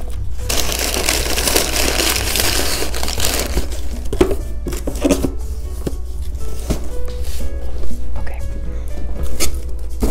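Loud crinkling and rustling for about three seconds, then scattered knocks and clatter, as products and packing material are put back into a cardboard box. Background music plays throughout.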